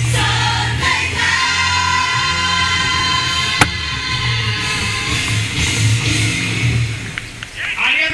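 Live amplified pop song with a singer, played over a PA system and heard from across a large open plaza. It fades out shortly before the end, with a single sharp click about three and a half seconds in.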